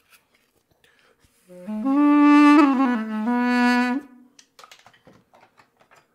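Armenian duduk played briefly: a short phrase of a few held low notes with a dip in pitch in the middle, starting about a second and a half in and stopping about four seconds in. Soft handling clicks follow as the instrument is put down.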